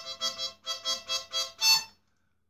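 Harmonica in A minor playing rhythmic chords, pulsing about four times a second, with a brief break about half a second in; it ends on a louder chord near the end and stops.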